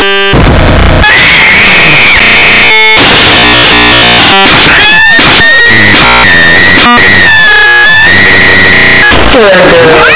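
Deliberately overdriven, clipped 'earrape' audio: harsh distorted noise at full volume, with a high wavering tone held through most of it and a few brief cut-outs.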